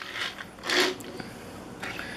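Die-cast toy cars pushed by hand along a hard surface: short rolling, rattling scrapes of small wheels and bodies, the loudest a little under a second in.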